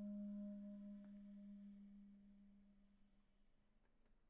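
Clarinet holding a single low note that fades away gradually over about three seconds.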